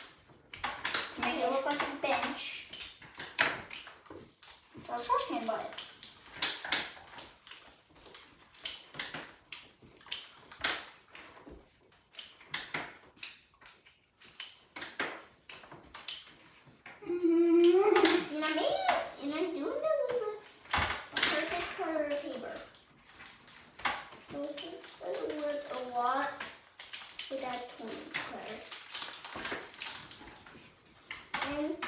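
Children's voices talking and murmuring at intervals, among short scratches and taps of felt-tip markers on paper and the table.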